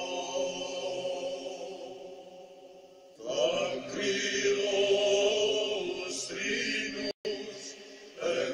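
Greek Orthodox chant sung in long held notes. The chanting fades down toward the middle, a new passage starts loudly a little past three seconds in, and there is a split-second dropout near the end.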